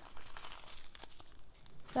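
Small clear plastic bags of diamond-painting drills crinkling softly as they are handled, with a few faint clicks.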